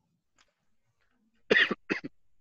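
Near silence for about a second and a half, then a person coughs twice in quick succession.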